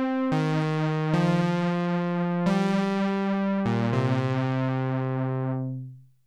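Sustained synthesizer pad chords played through a June-60 analog chorus pedal (a Juno-60-style chorus) on setting three, both chorus modes together, after its internal trim pots were re-tuned for a subtler effect. The chorus wobble is still pretty deep. The chord changes about four times and fades out near the end.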